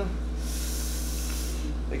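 A person drawing one deep breath in, about a second long, over a steady low hum.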